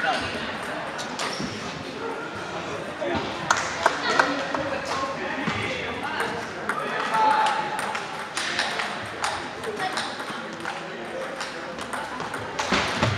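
Scattered sharp clicks of table-tennis balls striking tables and paddles, a quick cluster about three and a half to four seconds in, over a steady babble of voices in a large, echoing sports hall.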